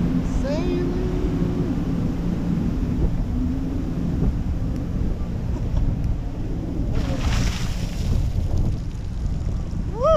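Wind rushing over the microphone mixed with churning wake water, with a boat engine running underneath, as a parasail harness is towed low over the sea. A brief louder hiss comes about seven seconds in.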